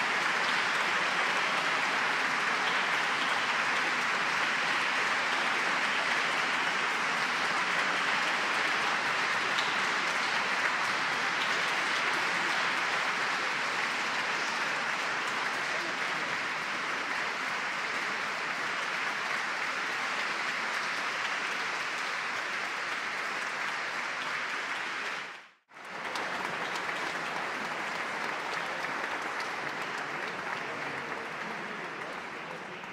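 Audience applauding steadily, slowly fading. The sound drops out suddenly for a split second near the end.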